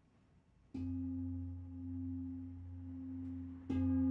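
Large singing bowl struck twice, about a second in and again near the end, each strike ringing on as a deep hum with higher overtones that wavers slowly in loudness.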